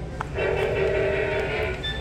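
Animated Grinch Christmas figure's built-in speaker playing a chord of several steady tones, held for about a second and a half, starting just after a small click.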